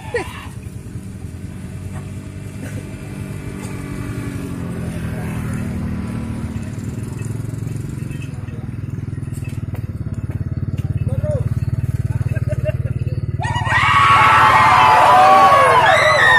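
A motor vehicle's engine running steadily under the sound of a marching crowd, its low drone swelling over the first half. About thirteen seconds in, loud shouting from several men's voices breaks in and carries on.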